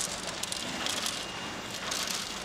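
Candy-factory conveyor running, with many small hard candies rattling and pattering along it as a steady clatter. A faint, steady high machine whine runs underneath.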